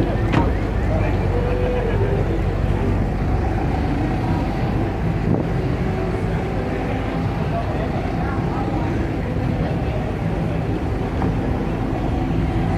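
A car door shuts once about half a second in, followed by a steady low hum with indistinct voices of people around.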